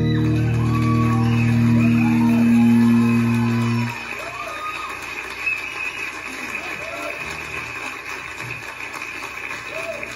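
A live band's closing chord on acoustic and electric guitars, held steady and then cut off about four seconds in. The audience then applauds and cheers, with scattered whoops.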